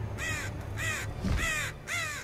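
A crow cawing repeatedly: about four harsh caws in two seconds, each a short cry that rises and then falls in pitch, over a steady low hum.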